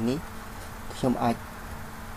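Mostly a steady low hum with faint hiss under a voice-over recording. A narrator's voice speaks one short word about a second in.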